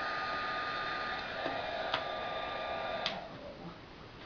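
Craft embossing heat tool blowing hot air with a steady whine, heating an acetate petal to soften it. A click about two seconds in, then another just after three seconds, after which the tool's sound dies away.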